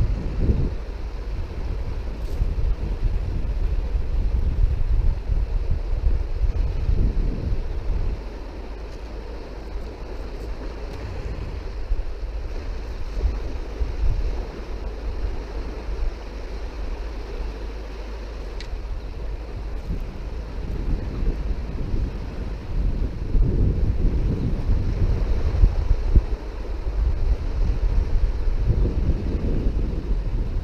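Wind buffeting the camera's microphone in gusts, a low rumble that rises and falls over a faint steady hiss. It eases off about eight seconds in and picks up again well past the middle.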